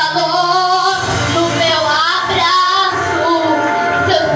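A young girl singing a Portuguese gospel song into a microphone over a recorded instrumental backing track, her voice amplified in a hall.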